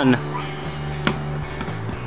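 Background music with a guitar, and one sharp thud about a second in as a dropped apple hits the ground and bounces.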